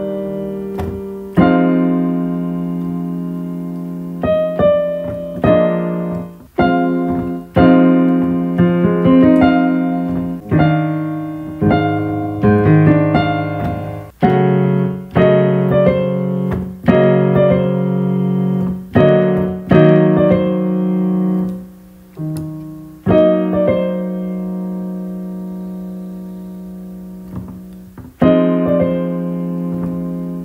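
Digital piano played in sustained chords, struck every second or two in phrases with short breaks, ending with a long held chord that slowly fades before a new phrase starts near the end.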